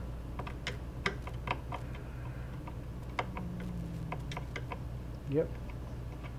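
Faint, irregular small clicks, about three a second, of a flathead screwdriver turning the spring-loaded screws that hold a processor heat sink down on a motherboard, a couple of turns at a time.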